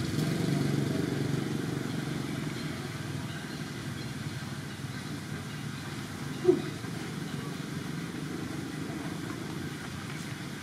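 Low, steady rumble of an engine running at a distance, fading over the first few seconds and then holding. One short pitched sound stands out about six and a half seconds in.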